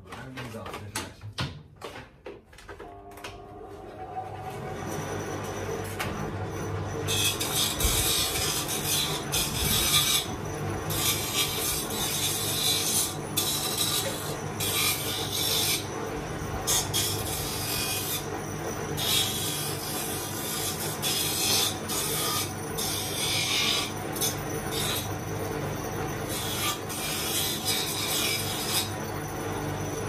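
Electric bench abrasive machine spinning up to a steady hum over the first few seconds. From about 7 s on, wood is pressed against it again and again, giving repeated bursts of rasping as the sharp edges are taken off the wooden pieces.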